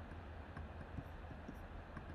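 Quiet room tone: a low steady hum with a few faint ticks about half a second apart.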